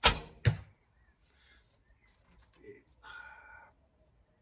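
A 36-lb Scythian horse bow shot with no string silencers: a sharp snap as the string is released, then about half a second later a second sharp thud as the wooden arrow strikes the target.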